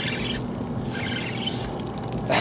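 Spinning reel being cranked in two short spells while a hooked fish is played on the line, over a steady low hum.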